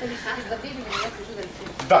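Low voices and murmur in a room, with a brief rustle of handling about halfway through.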